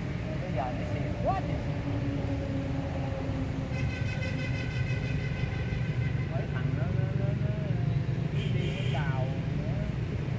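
A motor running with a steady low rumble, with faint voices in the background and a high pulsing tone for a few seconds in the middle.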